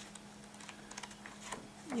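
Paper pages of a hand-bound notebook being flipped through by hand: a faint run of quick, soft paper flicks and ticks.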